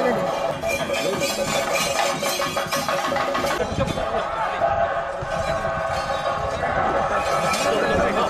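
Live theyyam ritual music: drums with frequent sharp strikes and clashing hand cymbals, under a mix of crowd voices.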